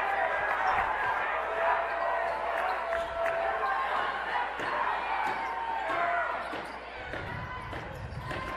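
Indoor basketball game sound: crowd chatter in a large gym, with sneakers squeaking on the hardwood court and a basketball dribbling.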